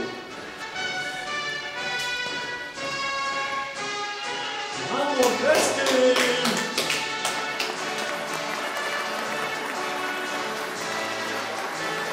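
Live band music playing steady held notes, with voices calling out briefly a little before the middle and a quick run of sharp taps around the middle.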